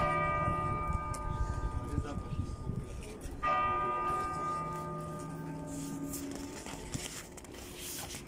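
A large church bell from the Peter and Paul Cathedral bell tower struck twice, about three and a half seconds apart, each stroke ringing on and slowly fading.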